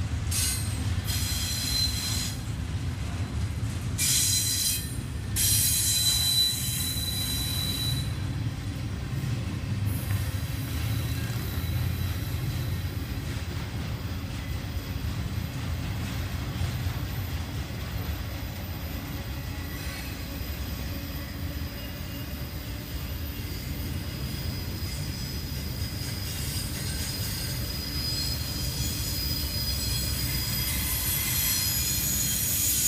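Double-stack intermodal freight train's well cars rolling past: a steady rumble of wheels on rail, with high-pitched wheel squeal coming and going over the first several seconds and again near the end.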